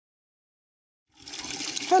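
Silence for about a second, then a tap starts running a thin stream of water into a plastic bucket, a steady splashing hiss.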